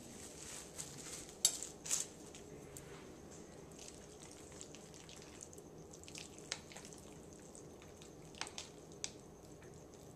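Soft wet clicks and squishes of hands assembling a sandwich: chicken salad pressed onto an onion bagel half. The sharpest clicks come about one and a half and two seconds in, with a few more near the end.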